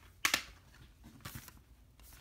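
A thin plastic Blu-ray case being handled: two short bursts of plastic handling noise, the first and louder a quarter second in, the second about a second later.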